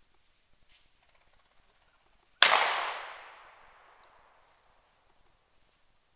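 A single shotgun shot about two and a half seconds in, its report echoing through the woods and dying away over about a second and a half.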